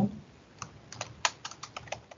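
Typing on a computer keyboard: a quick, uneven run of about ten keystrokes starting about half a second in.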